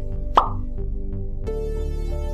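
Background music with a single short, quick-rising pop sound effect about half a second in. About a second later the music changes to a fuller electronic track with a steady bass.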